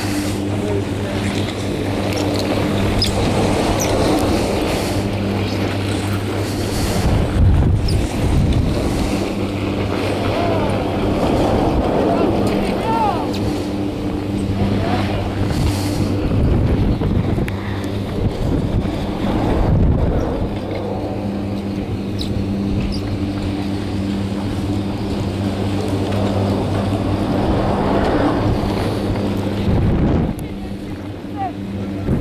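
Detachable chairlift terminal machinery running with a steady hum, while gusts of wind buffet the microphone.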